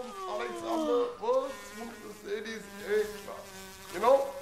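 A long yawn falling in pitch, then a voice droning and mumbling without clear words, over a steady fly-like buzz.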